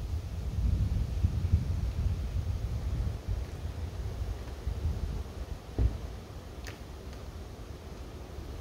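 Wind buffeting an outdoor microphone: a gusty low rumble that eases after about three seconds, with one brief thump near six seconds.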